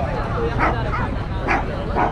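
A small dog barking repeatedly, short high barks about every half second.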